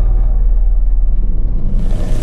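Instrumental section of a soundtrack song: a deep, sustained bass rumble with a hiss swelling up near the end.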